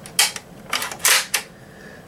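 Franchi Affinity 12-gauge semi-automatic shotgun being handled, its action giving a few sharp clacks: a loud one about a quarter second in, a softer one, then another loud one about a second in, as the gun is checked to be empty.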